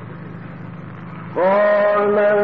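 A steady low background hum, then, about a second and a half in, a male Quran reciter's voice comes in loudly on one long held note of melodic recitation.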